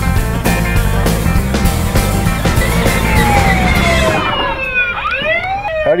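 Rock backing music with a steady beat, which cuts off about four seconds in. Under it and then alone, the electronic siren of a 12-volt ride-on toy fire engine wails in long falling sweeps, then quicker rising and falling ones.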